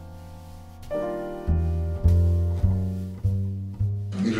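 Slow, quiet piano music: a held chord fades away, a new chord comes in about a second in, then deep bass notes follow roughly every half second.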